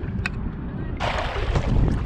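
Strong wind buffeting the microphone as a steady low rumble. From about a second in, a rushing hiss of water joins it as a kayak paddle strokes through the water.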